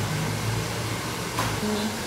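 Steady blowing noise of a hair dryer running in the salon, with a low hum under it and a single sharp click about one and a half seconds in.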